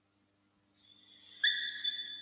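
Marker squeaking on a whiteboard as a stroke is drawn: a high, steady squeal that starts sharply about one and a half seconds in, after a faint scratch of the tip.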